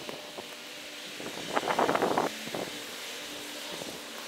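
Slabs of St. Augustine sod being pulled off a pallet and handled: a short burst of crackling and soft knocks about halfway through, over steady wind noise on the microphone.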